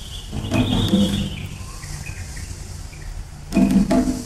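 Concert band playing a theatrical piece: low drum hits about half a second in and again near the end over a low rumble, with a high held sound in the first second and a half.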